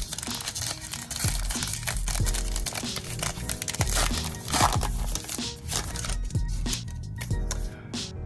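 Background music with a steady beat, over the crinkling and tearing of a trading-card pack's wrapper being ripped open.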